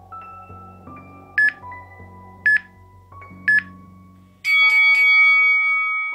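Workout interval timer giving three short countdown beeps about a second apart, then a louder, longer chime that signals the end of the rest and the start of the next round. Soft background music plays underneath.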